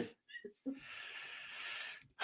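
A person's faint, drawn-out breath, a soft hiss lasting over a second, with a couple of faint short sounds just before it.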